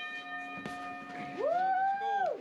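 A boxing round bell rings out after a single strike, its tones fading over the first second, marking the start of a round. About halfway in, a man lets out a long "woo!" that rises and then holds.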